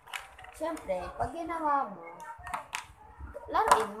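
A girl's voice talking and chattering, with a couple of light clicks a little past the middle.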